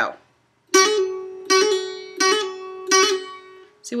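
Mandolin: the same note picked four times, about once every three-quarters of a second, each ringing on after the strike. Each strike carries a quick trill, a fretting finger tapping the string and letting go, used as an ornament.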